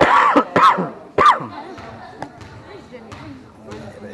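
Three loud shouted calls from girls' voices in the first second and a half, each rising and then falling in pitch, then quieter background voices with a few sharp knocks.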